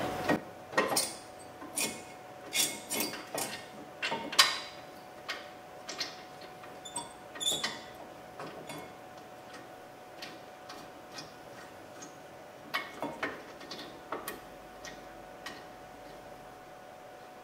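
Irregular metallic clicks and clinks of a steel brake caliper mounting bracket and its bolt being handled and fitted by hand against the steering knuckle and rotor, frequent at first, then sparser with a few more near the end.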